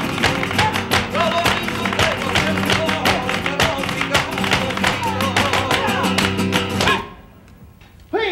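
Flamenco guitar with hand clapping (palmas) and heel stamping in a fast, even rhythm, which stops abruptly about seven seconds in.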